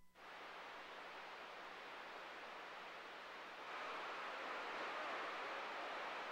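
Faint static hiss from a CB radio's receiver between transmissions, growing a little louder about four seconds in.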